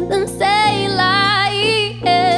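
A woman singing a melodic line with held, wavering notes, over a live acoustic band of piano and bass guitar.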